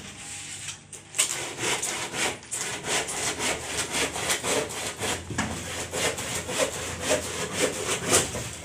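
Hand saw cutting through a wooden board in regular back-and-forth strokes, about two a second, starting about a second in.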